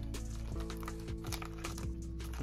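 Background music: a light instrumental track with held tones over a steady beat.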